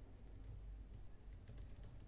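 Faint computer keyboard typing, with a quick run of key clicks in the second half, over a steady background hiss.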